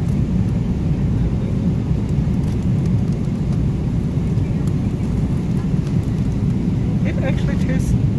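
Steady low drone of an airliner cabin in flight, engine and air noise, with faint crinkling of aluminium foil being pulled off a meal tray.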